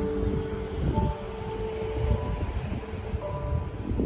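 Soft opening chords of a backing track played over a PA system, held notes changing every second or so, under a loud low rumble.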